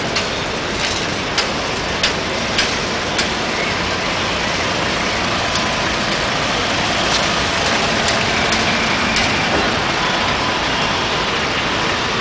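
Congested city traffic with a bus engine running close by, a steady dense noise. A few sharp clicks come at an even pace in the first three seconds.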